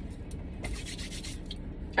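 Faint rustling and handling noise, a few soft brief scrapes over a low steady rumble.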